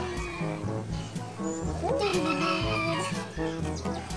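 Background music with a steady beat; over it a rooster crows once, rising and then drawing out, about two seconds in.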